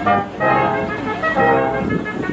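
Small brass ensemble of trumpets, French horn, tuba and trombones playing together, a passage of held notes that change every half second or so over a tuba bass line.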